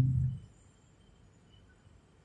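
A man's voice through a microphone trailing off in the first half second, then near silence: room tone.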